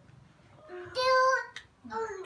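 A toddler's voice: one short sung 'aah' held on a single steady high note for about half a second, around the middle.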